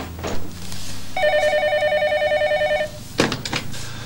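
Electronic office desk telephone ringing: one fast-warbling trill lasting under two seconds. About three seconds in comes the clatter of the handset being lifted from its cradle.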